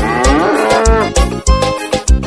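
A cow's moo, a long call that bends in pitch for about the first second, laid over a pisadinha (piseiro) beat whose steady bass and drum pulses run on underneath.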